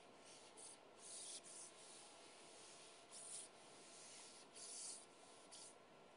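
Faint scratching of writing strokes, a handful of short strokes each a quarter to half a second long, with quiet gaps between them.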